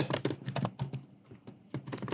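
Typing on a computer keyboard: a quick, irregular run of keystroke clicks, with a brief lull a little after the middle.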